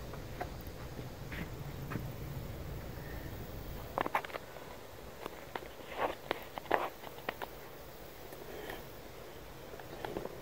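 Faint outdoor background with a low rumble early on, then a few scattered short taps and clicks in two clusters, about four seconds in and again around six to seven seconds in.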